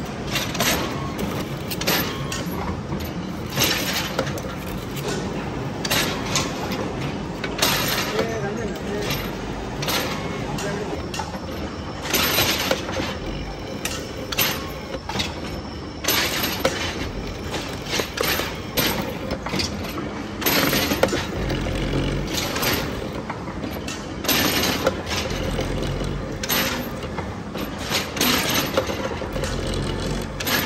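An old machine tool's cutter stroking back and forth along a steel shaft, cutting a keyway, with a sharp cutting surge about every two seconds over steady machine running and chip clatter.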